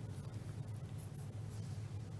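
Quiet meeting-room tone: a steady low hum with faint small scratching and rustling sounds.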